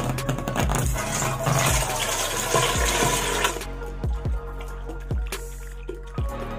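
Background music with a steady beat, over the rushing splash of liquid rubber latex being poured into a square sheet-making mould for about the first three and a half seconds.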